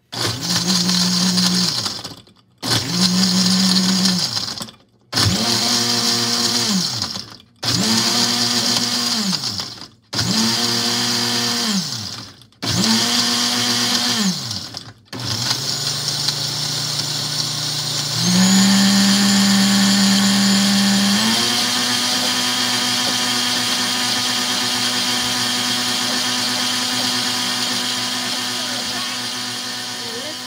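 Countertop blender pulsed six times in bursts of about two seconds, the motor winding up and down each time, then run continuously to blend a smoothie with ice. Partway through the long run it speeds up for a few seconds before settling into a steady whir.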